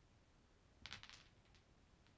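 Mostly near silence, with a marble giving about four faint quick clicks against the wooden Jenga-block rails about a second in as it rolls along the padded track.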